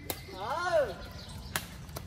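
Two sharp racket strikes on a badminton shuttlecock: an overhead hit right at the start and a return about a second and a half later.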